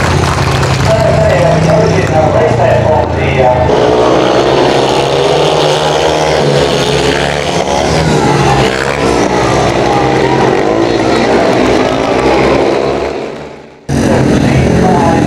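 Speedway motorcycles' 500cc single-cylinder methanol engines running at race speed, their pitch rising and falling. The sound fades out near the end.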